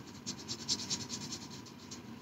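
Felt-tip sketch pen scratching on paper in quick, short back-and-forth strokes while drawing.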